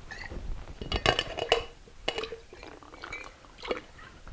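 A glass liquor bottle and a shaker tin being handled in a flair move, knocking and clicking together. The sharpest cluster of clicks comes about a second in, with lighter knocks scattered after it.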